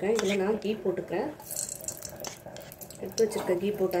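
Speech: a voice talking in short phrases, with a brief noisy burst about a second and a half in.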